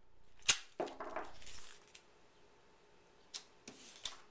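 Duct tape handled on a wooden tabletop: a sharp tap about half a second in, a short rasp of tape peeling off the roll, then a few light taps near the end as the new strip is pressed down beside the first one.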